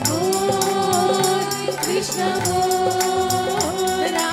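Devotional bhajan sung by a group of voices holding long notes, over steady jingling hand percussion at about four or five strokes a second.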